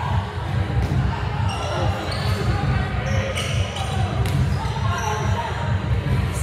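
Volleyballs being hit and landing on a hardwood gym floor during warm-up: about half a dozen sharp, irregularly spaced smacks in a large gym, over a steady low hum and scattered voices.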